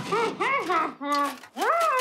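An animated character's voice making wordless, sing-song vocal sounds: a quick run of short syllables that bend up and down in pitch.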